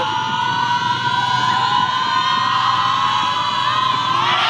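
A crowd of players and fans cheering, with a long held high-pitched shout from many voices that rises slightly, building up to the trophy being lifted.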